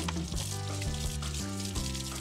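Kitchen tap water running steadily onto a whole fish being rinsed in the sink, under background music with slow, stepping low notes.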